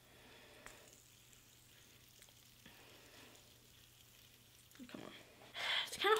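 Faint, steady whirr of a hand-held fidget spinner spinning, with a couple of light clicks; a louder hiss comes in near the end.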